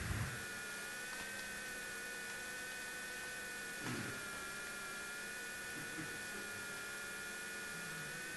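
Steady electrical mains hum with a thin, steady high-pitched whine over it, as from a microphone or sound-system chain. Faint brief sounds come at the start and about four seconds in.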